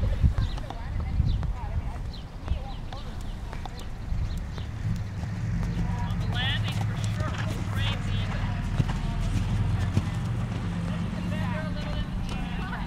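A ridden horse's hoofbeats on sand arena footing as it canters past. A steady low rumble runs under them from about four seconds in.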